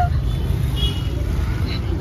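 Busy street-market ambience: a steady low rumble under faint, indistinct voices.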